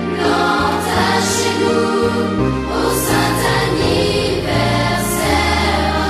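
Background music: a choir singing, with held chords that move from note to note.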